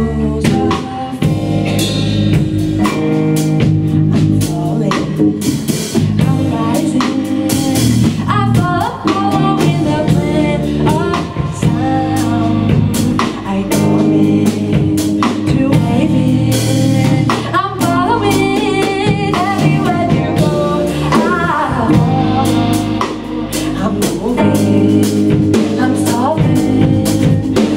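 Live band playing a song: drum kit, bass guitar and guitar, with women singing.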